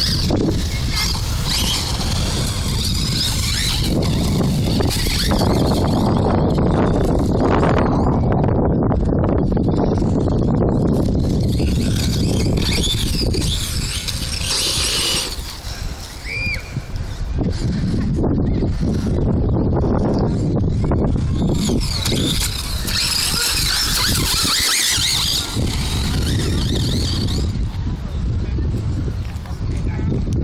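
Vaterra Glamis Uno radio-controlled electric buggy driving around a dirt track, its motor whining and its tyres scrabbling over dirt and grass in bursts, over a steady low rumble.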